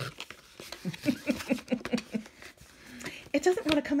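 Cardboard pen box being shaken to free a tightly fitted pen, with scattered light knocks, while a woman makes a quick run of short voiced sounds in the first half.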